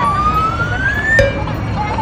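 A single thin, siren-like tone gliding steadily upward in pitch, breaking off with a click a little over a second in, over a steady low rumble.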